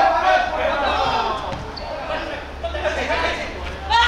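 Men's voices shouting and calling out on a football pitch, with thuds of the ball being kicked and a sharp thud near the end.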